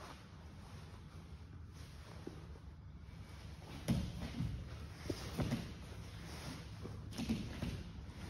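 Cotton gi fabric rustling and bodies and bare feet shifting on a grappling mat, with soft thumps about four, five and a half and seven seconds in.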